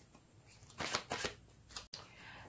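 A deck of playing cards being handled, with cards flicked off the deck and dealt onto a table: three quick card sounds in the second half.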